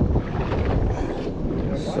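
Steady wind buffeting the microphone aboard a small boat on the water, with a short laugh near the end.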